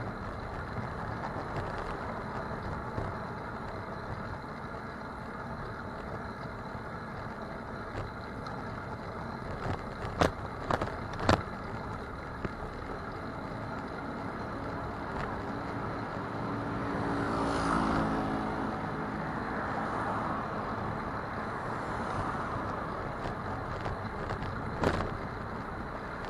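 Steady wind and road noise of a bicycle ride, picked up by a bike-mounted action camera, with two sharp knocks about ten and eleven seconds in. A motor vehicle passes about two-thirds of the way through, swelling and fading.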